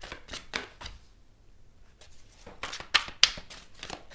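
A deck of tarot cards being shuffled by hand: two runs of quick, papery card taps, the first in the opening second and a louder one about three seconds in.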